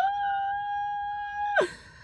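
A woman's voice holding one high, steady note for about a second and a half, like a playful howl or squeal. It slides up into the pitch at the start and drops off at the end.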